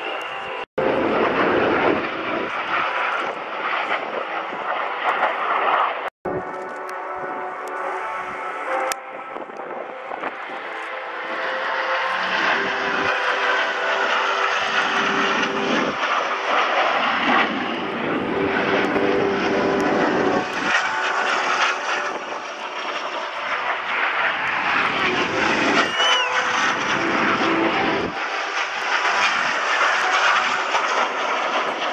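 Jet engines of Alpha Jet display aircraft passing overhead in formation: a steady rushing noise that swells and fades as they pass. Two brief dropouts in the first six seconds break it.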